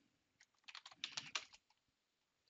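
Computer keyboard typing: a faint, quick run of about eight keystrokes as a column name is typed in.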